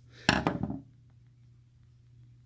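A short clatter of small hard objects being handled, with a sharp start about a quarter second in and fading within half a second. After it there is only a faint, steady low hum.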